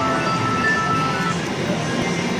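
Slot machine playing its electronic win jingle while the credit meter counts up a three-sevens payout, with a steady run of tinkling tones.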